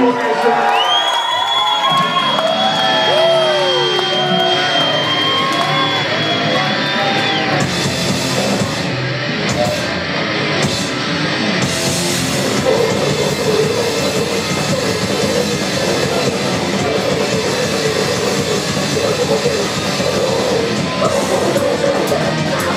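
Metal band playing live in a club hall. For the first seven seconds or so there are guitar squeals, with gliding, bending pitches and one long held high note, and no bass or drums under them. Then the full band comes in loud: distorted guitars, bass and drums, steady to the end.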